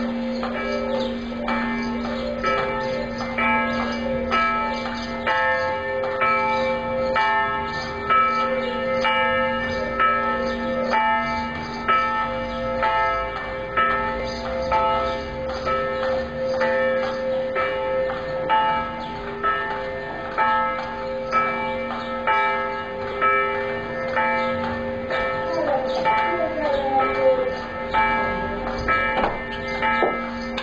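Church bells ringing the noon bell: a steady run of strokes, about one a second, each ringing on into the next so that several tones hang together.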